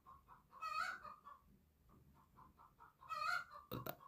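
Faint animal calls in the background: two short calls, one just under a second in and one about three seconds in, with a quiet run of short repeated notes between them. There is a brief knock just before the end.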